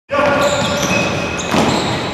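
Sneaker soles squeaking on a hardwood gym floor as futsal players run and turn: many short, high squeaks at different pitches overlapping. A sharp knock about one and a half seconds in, likely a foot striking the ball.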